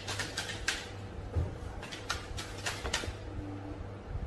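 Tarot cards being shuffled and drawn by hand: a string of soft clicks and flicks in two clusters, with a pause between.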